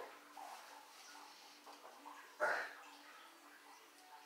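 A weightlifter's short, forceful exhale through the mouth, once about two and a half seconds in, as he presses a barbell off his chest on a floor press. Between breaths only a faint low hum.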